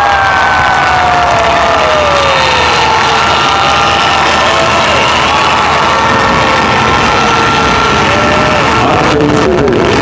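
Large audience cheering and screaming, with long wavering shouts rising and falling above a steady din of crowd noise.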